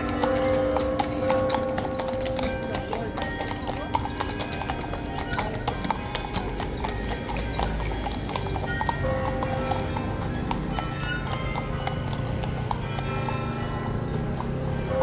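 Horses' hooves clip-clopping on cobblestones as several horse-drawn carriages pass close by, a dense run of sharp hoof strikes. Crowd chatter and background music carry on underneath.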